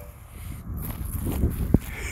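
Footsteps on frozen, ice-crusted grass, with wind rumbling on the microphone and a sharp click near the end.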